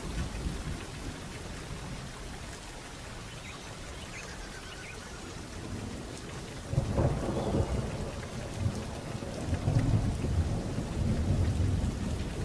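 Steady rain hiss with low thunder rumbles, one swelling about seven seconds in and another building near the end.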